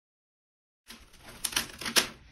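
Dead silence for about the first second, then tissue wrapping paper rustling and crinkling in a run of uneven crackles as a card is lifted off it.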